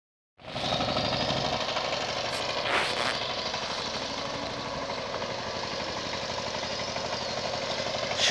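Two-wheel power tiller's engine running steadily as it ploughs a wet paddy field, with a short louder noise about three seconds in.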